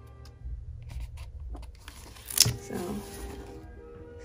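Paper pages of a paperback book rustling as they are thumbed and turned, with a few soft flicks and one sharp page snap about halfway, over soft background music.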